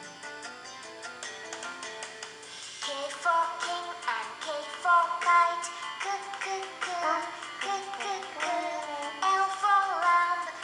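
A children's nursery-rhyme song playing from a smartphone. A few seconds of instrumental music, then a sung melody over the accompaniment from about three seconds in.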